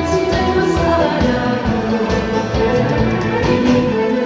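A woman singing live into a handheld microphone over loud instrumental accompaniment.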